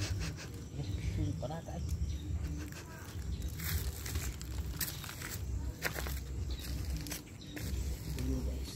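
Stiff pineapple leaves rustling and scraping as a hand pushes in among the plant, heard as scattered short crackles over a steady low rumble.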